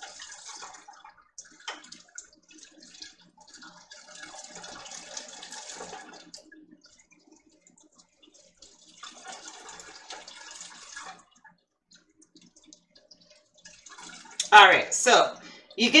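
Crab apple juice trickling and splashing from a pulp-filled strainer bag squeezed by hand into a colander over a stockpot. It comes in several spells of one to three seconds, with pauses between.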